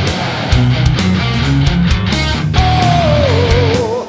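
Heavy metal band playing live, with pounding drums, bass and distorted guitars. From a little past halfway, a high held lead note slides slowly downward and wavers in a wide vibrato.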